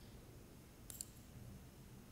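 A single computer mouse button click, a quick press-and-release pair of ticks about a second in, over near-silent room tone.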